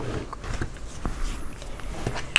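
Faint handling sounds: a few light clicks and taps as hands move across a wooden tabletop and reach for craft supplies, over a low background rumble.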